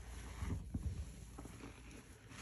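A soaked foam sponge squeezed and kneaded by hand in a sink of thick detergent suds: wet squelching and sloshing, with a cluster of soft squishes about half a second in and a few more near the end.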